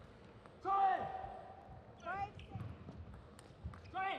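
A table tennis point ends with a loud shout whose pitch falls, just under a second in, then a shorter rising call around two seconds. A few faint ball taps come near the end.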